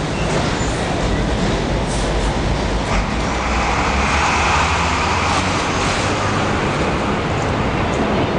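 A New York City subway 4 train running on the elevated steel structure overhead: a steady, loud rumble with a broad swell of wheel-on-rail noise through the middle, over street traffic.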